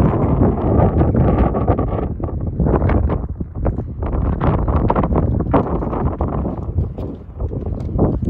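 Wind buffeting the microphone: a loud, low, uneven noise that gusts in irregular surges.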